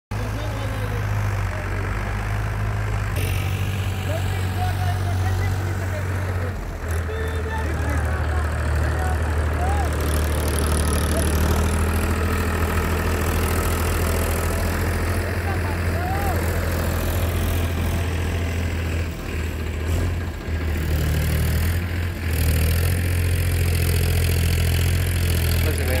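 Powertrac Euro 45 tractor's diesel engine running under load as the tractor works to get out of deep loose sand; its steady low note shifts in pitch and level several times.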